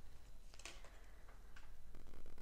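Tarot cards being handled: a few faint, short clicks and light scrapes as cards are taken from the piles and lifted, the sharpest about two-thirds of a second in.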